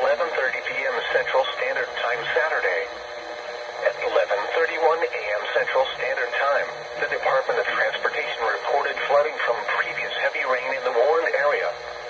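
Automated voice of a NOAA Weather Radio broadcast reading a flood warning, heard through the weather alert radio's small speaker and sounding thin.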